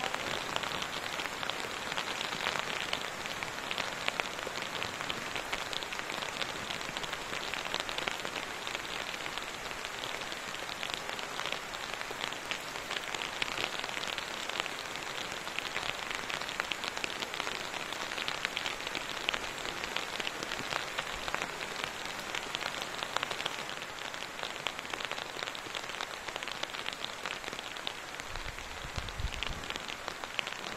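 Steady rain falling, a dense, even hiss of countless small drop impacts.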